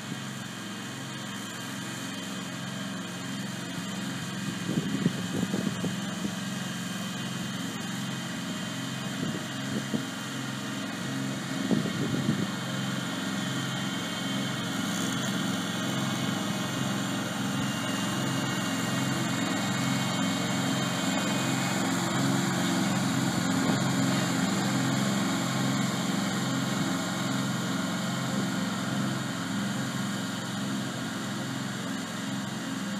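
Ransomes Spider radio-controlled slope mower's petrol engine running steadily as it mows, with a regular pulsing beat, growing louder as it comes closer. A few brief knocks stand out around five and twelve seconds in.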